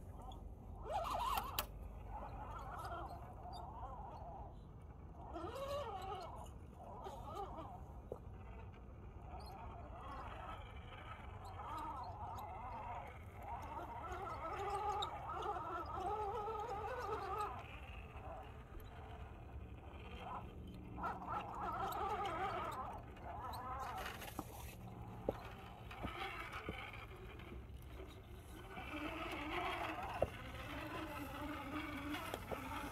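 Electric motors and geartrains of 1/10-scale Axial SCX10 RC rock crawlers whining in short spells, the pitch wavering up and down with the throttle as they crawl over rock. A steady low rumble runs underneath.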